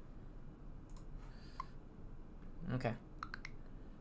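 A few quiet computer mouse clicks, once about a second in and several just after three seconds in, as a program is started from the code editor.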